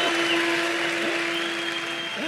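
Audience applause, dying away gradually.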